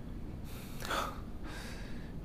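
A man's breath: a short audible gasp or huff of air about a second in, then a fainter breath.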